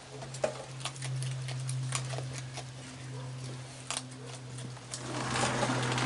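Raccoons eating dry kibble and sunflower seeds on a wooden deck: scattered small crunches and clicks at an uneven pace, over a steady low hum.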